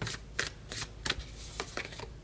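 A deck of tarot cards being shuffled and handled by hand: a few sharp, irregularly spaced card flicks and slaps as cards are pushed through the deck and one is drawn off.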